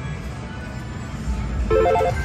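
Slot machine electronic music over a steady low casino-floor hum, with a short chime of stepped electronic notes near the end as credit registers on the machine after money is put in.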